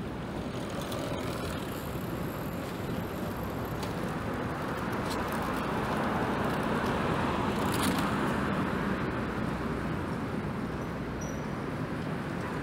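Road traffic on a city street: a steady rush of passing cars and tyres that swells to its loudest about two-thirds of the way through, then eases off.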